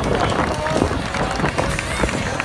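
Live sound of an outdoor floorball game: players and spectators shouting over one another, with short sharp clicks of sticks and ball.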